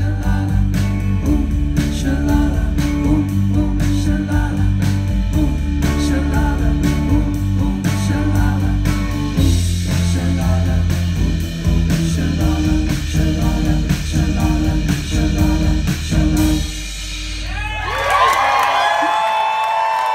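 Live band with electric guitar playing the last bars of a song with a steady beat, then stopping abruptly about seventeen seconds in. The audience then breaks into cheering and whistling.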